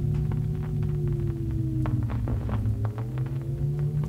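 Experimental turntable music: a steady low droning hum with higher tones that slowly rise and fall in long arcs, over scattered sharp clicks.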